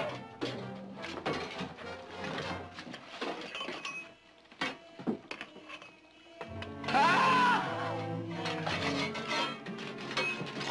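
Dramatic orchestral score under picks and shovels striking rock and earth in quick, irregular blows. About seven seconds in comes a loud, strained cry.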